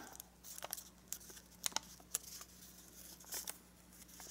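Origami paper (kami) being squash-folded and creased between the fingers: faint rustling with scattered small sharp crackles.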